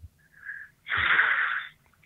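A person's faint short breath in, then a heavy exhale lasting about a second: a sigh into the microphone before answering a tough question.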